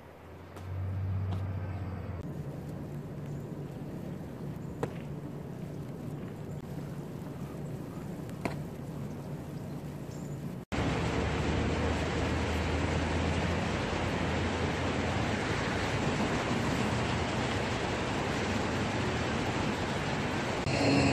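Steady outdoor background noise on a phone microphone, with a few single sharp knocks in the first half. After an abrupt cut it becomes a louder, even rushing noise.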